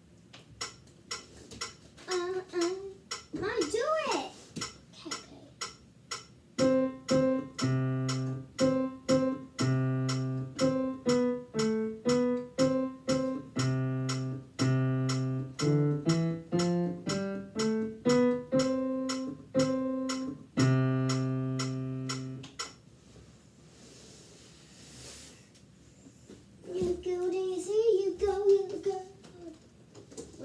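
A digital piano played in steady chords, a deep bass note under many of them and a line that steps down and back up in the middle; the playing stops about two-thirds of the way through. A voice is heard a few seconds in and again near the end.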